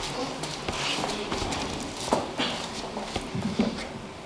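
Quiet meeting-room bustle: faint voices, scattered knocks and shuffling footsteps, with no one speaking into the microphone.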